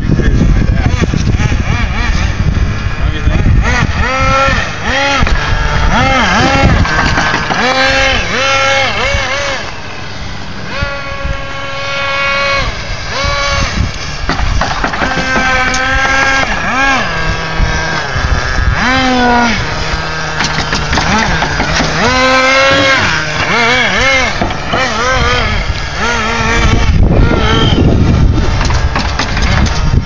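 Small glow-fuel nitro RC car engine revving up and falling back in quick repeated surges, about one a second, as the truck is driven. It holds one steady high rev for a couple of seconds in the middle.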